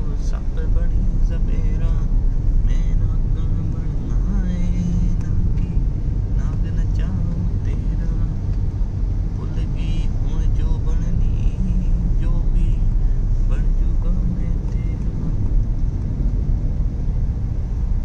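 Steady low rumble of road and engine noise inside a moving car's cabin, with voices heard now and then over it.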